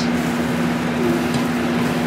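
Eggs sizzling steadily in a hot cast iron skillet as they are stirred with a spatula, over a steady low hum.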